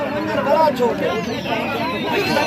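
Several men's voices talking over one another outdoors, unclear chatter with no single clear speaker. A faint high note glides downward through the second half.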